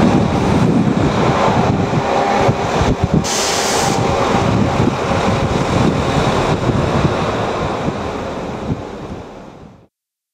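An HS1 multi-purpose vehicle and track machine rumbling past on the high-speed line, mixed with wind buffeting the microphone. A brief hiss comes about three seconds in, and the sound fades out near the end.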